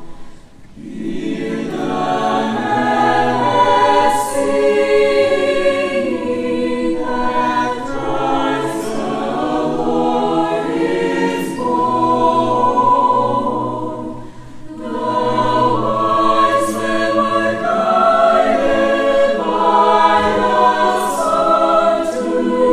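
Mixed choir singing a gospel-style Christmas spiritual in full harmony, in long phrases with a brief breath break about half a second in and another around fourteen seconds in.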